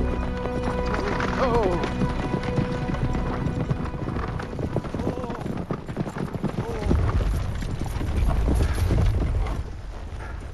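Horses' hoofbeats as a pair of horses pulls a chariot, with a horse whinnying once, falling in pitch, about a second in.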